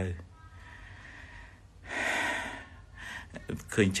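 A man's audible in-breath, one noisy breath about two seconds into a pause in his talk, over a faint low hum.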